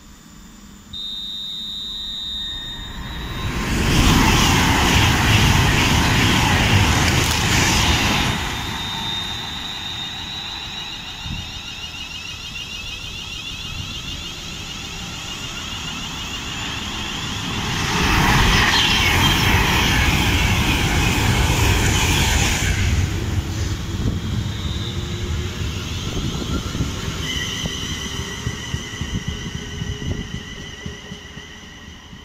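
Electric trains at a main-line station: a high steady whine starting about a second in, then two loud rushes of trains passing at speed, the first a few seconds in and the second at about 18 seconds. Near the end, a set of high steady squealing tones as a Class 350 electric multiple unit comes in.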